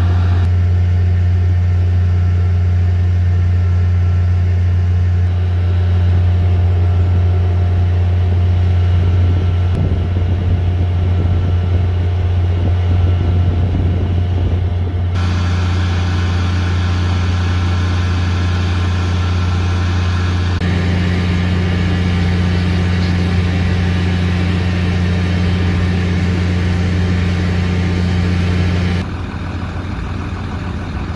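Fire engines idling at the scene: a loud, steady low engine drone. The sound changes abruptly about halfway through and again near the end.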